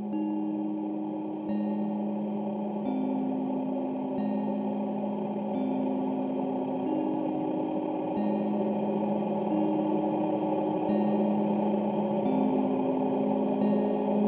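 Electronic bell-like tones from a custom-made data-driven instrument: low sustained notes that enter one after another about every second and a half, each with a faint chiming attack. They sound over a dense steady drone that slowly grows louder.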